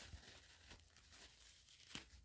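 Near silence: faint rustling and rubbing from wiping something off by hand.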